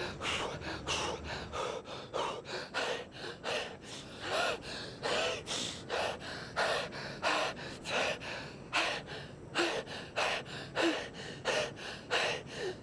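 A man panting and gasping hard for breath in quick, rhythmic breaths, winded from running sprints.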